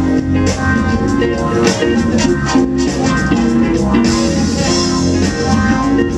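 Live soul and R&B band playing an instrumental passage with no vocals: guitar, bass and drums over a steady beat.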